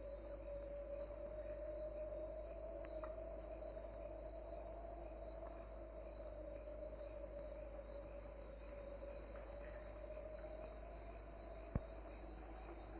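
Faint night ambience: crickets chirping sparsely over a low, steady, slightly wavering drone, with a single brief click near the end.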